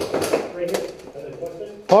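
Airsoft rifle shots: a few quick, sharp cracks in the first second, then scattered fainter clicks. A man shouts near the end.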